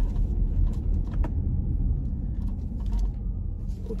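Low rumble of a car heard from inside the cabin, engine and road noise as it pulls into a parking spot, with a couple of faint clicks about a second in.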